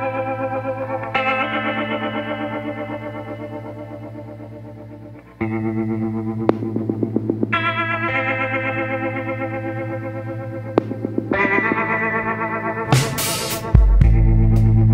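Background music: slow, sustained chords over a steady low bass, dipping briefly about five seconds in and growing louder near the end.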